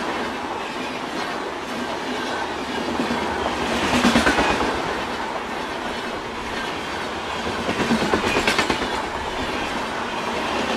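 Passenger coaches of an express train rushing past at speed close by, their wheels rolling and clattering on the rails. The clatter swells louder about four seconds in and again near the end.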